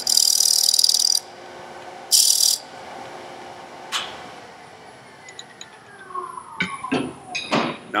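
A scraper cutting the inside bottom of a wooden jar lid spinning on a lathe, a loud hiss that stops about a second in and comes back briefly at two seconds. Then a click, and the lathe's motor whine falls in pitch as it coasts down, with a few knocks near the end.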